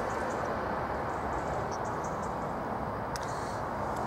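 Steady outdoor background noise, an even hiss-like wash with no distinct events, and a few faint high chirps.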